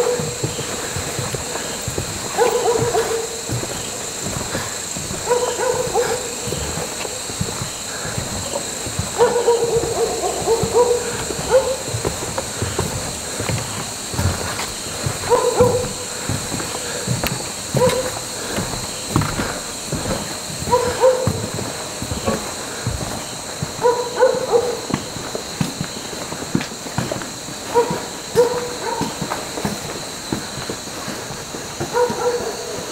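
An owl hooting again and again: short, low hoots every two to three seconds, some in pairs.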